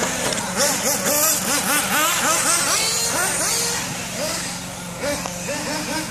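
Small radio-controlled off-road car's motor revving up and down over and over, several quick throttle surges a second, as it runs around a dirt track.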